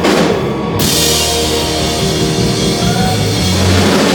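Live rock band playing loudly, drum kit to the fore over guitar and bass, with a cymbal crash about a second in that rings on.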